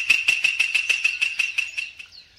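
A rapid, even series of sharp clicks, about five a second, each with the same high ringing tone, stopping near the end: a ticking sound effect.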